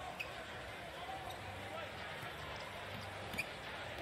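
Faint basketball game sound on the court: a ball dribbling on the hardwood with a few short high squeaks over a low, steady background.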